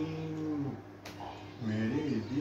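An elderly man's voice holding one long, low, drawn-out sung note that ends about three-quarters of a second in. A short click follows about a second in, and his voice starts again near the end.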